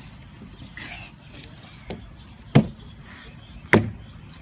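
A few sharp knocks, a little over a second apart, the loudest two near the end, over a faint background.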